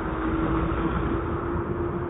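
Road traffic: a vehicle engine's steady hum holding one pitch over a low rumble.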